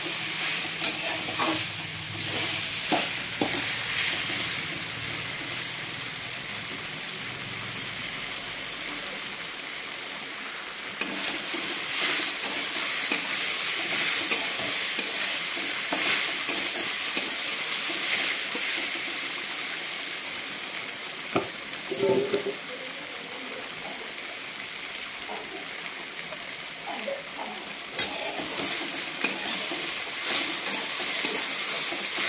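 Chopped green vegetables frying in a steel kadhai on a gas stove, stirred with a steel spatula: a steady frying hiss with repeated scrapes and taps of the spatula on the pan. A louder metal knock comes about three quarters of the way through.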